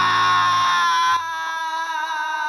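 A man's long, drawn-out wailing cry of the name "Nam!", held on one high pitch that sinks slightly and cuts off sharply just over a second in. It is followed by soft background music.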